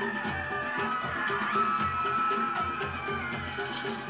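Film soundtrack music with steady rhythmic drumming, played through speakers and picked up by a camera in the room.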